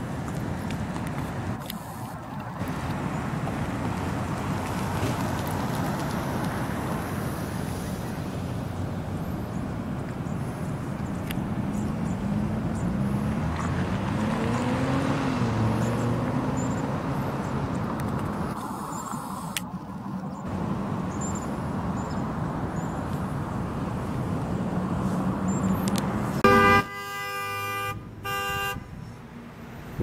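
Steady rushing of wind and riding noise from a bicycle crossing a parking lot, then a car horn sounds near the end in several short blasts, the first the loudest.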